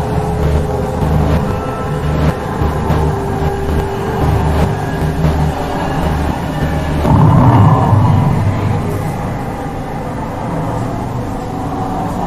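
Experimental noise music: a low throbbing pulse repeating a little under twice a second under layered drones and thin held tones, swelling into a louder rushing surge about seven seconds in, then settling into a steadier drone.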